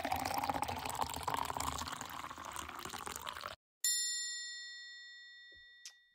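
Liquid pouring, with a faint pitch that rises slightly as it goes, stopping abruptly about three and a half seconds in. A bright bell-like ding follows and rings out, fading over about two seconds.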